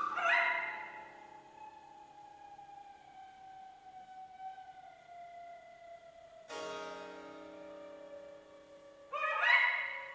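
Contemporary chamber music for flute, recorder, harp and harpsichord: a loud chord at the start, then a long held wind note sliding slowly down in pitch for several seconds, a struck chord about six and a half seconds in, and a last loud burst near the end before the sound dies away.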